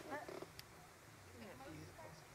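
Faint, indistinct talk of several people in the background, with a low steady hum underneath.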